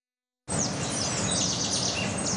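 Silence for about half a second, then birds chirping over a steady outdoor background noise that cuts in abruptly.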